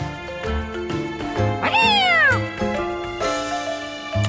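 Children's background music with a cartoon creature's cat-like vocal call about halfway through: one call that rises briefly and then falls.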